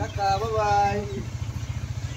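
Small engine of a moving auto-rickshaw running with a steady low throb. A voice calls out one drawn-out phrase in the first second.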